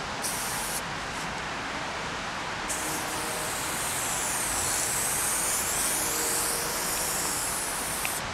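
Aerosol spray paint can hissing: a short burst about a quarter second in, then one long continuous spray from about three seconds in, over a steady background hiss.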